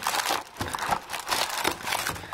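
Plastic bag and cardboard packaging crinkling and rustling in irregular bursts as a bagged cable lock is lifted out of a gun box by hand.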